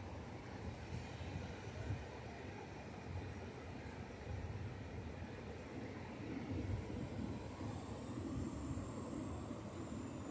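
Distant ocean surf breaking on a sandy, rocky beach: a steady low rush with irregular low rumbles, swelling slightly in the second half.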